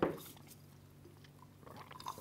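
Near silence, then near the end a few faint, soft clicks and sips from milk being drawn up through drinking straws.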